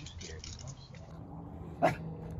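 A dog gives one short, loud yelp near the end, over a low steady hum. There are faint crunching clicks in the first second.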